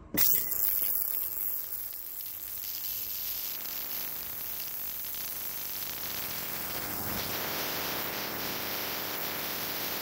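VEVOR digital ultrasonic cleaner switched on and running with a steady hissing buzz from its water bath. The noise starts suddenly as it is turned on, then holds even.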